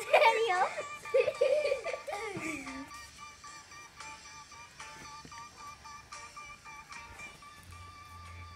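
Young girls laughing and giggling for the first few seconds, then light background music with steady held notes.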